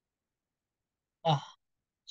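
Dead silence, then a man's voice saying one short word, "nah", a little past the middle.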